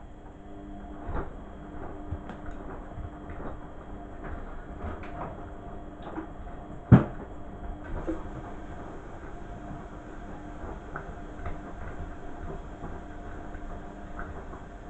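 Beko front-loading washing machine tumbling a wash: a steady motor hum with irregular knocks and clunks as the laundry turns in the drum, and one much louder knock about seven seconds in.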